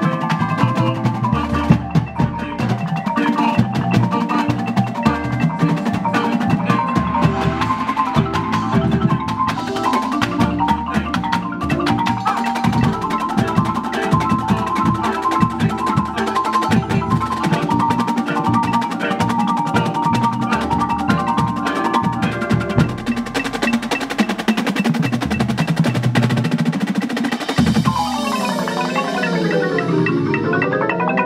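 A drum corps front ensemble of Yamaha marimbas and other mallet percussion playing a fast, busy passage together, moving into a new passage near the end.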